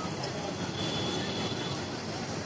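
Busy street traffic noise: a steady rumble of vehicles with indistinct voices of passers-by.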